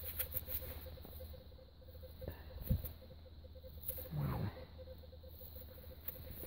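Faint rustling and scraping of a gloved hand working in dry leaves and loose soil around a dug hole, with small clicks, a dull thump a little before halfway and a brief low voice sound a little later.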